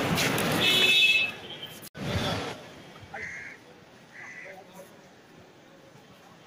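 Busy street noise with voices and a short, high vehicle horn blast about half a second in. After a sudden break near two seconds it turns much quieter, with two brief high beeps.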